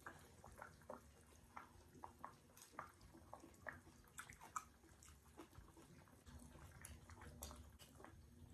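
Faint close-up eating sounds of hotpot noodles: soft slurps and chewing, with many short, irregular wet clicks and smacks.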